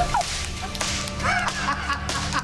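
A sharp crack as a handgun-like prop is fired into the air, with a second, weaker crack a little under a second later. A voice then cries out over a steady music bed.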